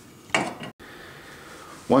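A single short scraping knock, about a third of a second long, of a blade cutting through tubing against a wooden block.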